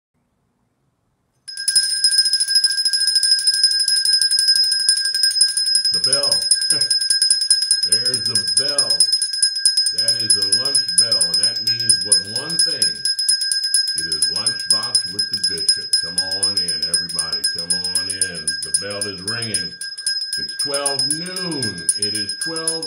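A steady high-pitched ringing tone starts after a moment of silence and holds unchanged, with a man's voice sounding over it on and off from about six seconds in.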